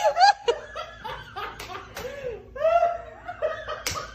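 A woman laughing in repeated short bursts of giggles and snickers, with a few sharp clicks.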